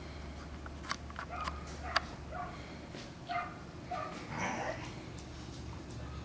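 Puppies giving a string of short yips and whimpers as they play with toys, with a louder cry a little after four seconds. Two sharp clicks come in the first two seconds.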